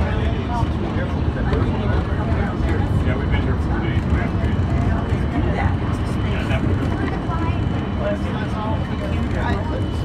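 Monorail train running, heard from inside the cabin as a steady low rumble, with passengers' voices chattering over it.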